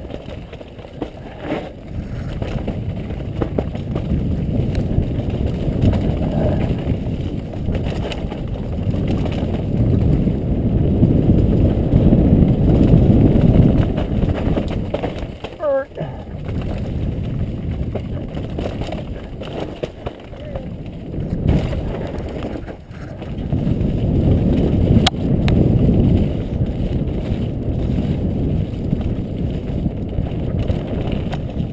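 Wind buffeting a helmet-mounted camera during a fast downhill mountain-bike descent, mixed with the rattle of the bike and its tyres over a rough dirt trail. The rumble swells twice, about a third of the way in and again near the end.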